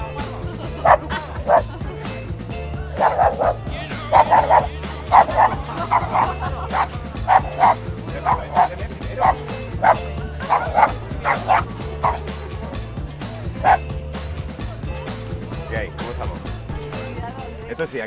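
Small dog on a leash barking repeatedly in short, sharp yaps, about twenty barks in irregular runs that stop near the end, over background music.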